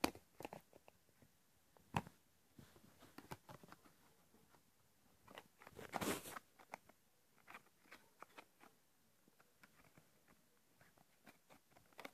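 Faint handling of a smartphone: scattered small plastic clicks as its back cover is fitted and pressed into place, with a longer rustle about six seconds in.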